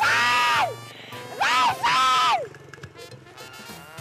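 A woman shrieking for joy twice, each a long high cry that rises and then falls, over background music.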